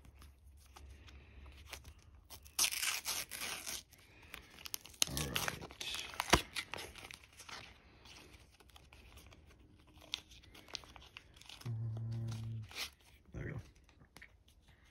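Paper sticker-pack wrapper being torn open by hand, with a loud rip about three seconds in. Crinkling follows as the wrapper is pulled apart and the stickers are handled, with a sharp click about six seconds in.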